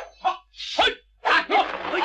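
A man's voice making short, broken vocal sounds: a few brief bursts with gaps of a fraction of a second between them.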